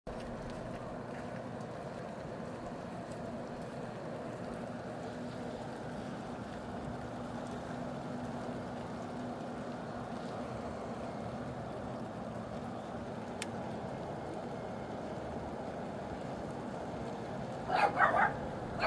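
Steady outdoor ambience on a rainy, breezy day: an even, low hiss-and-hum background with one sharp click a little past the middle. A dog starts barking just at the very end.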